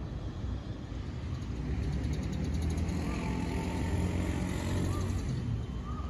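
Low engine rumble of a passing motor vehicle, swelling over the middle seconds and easing off near the end.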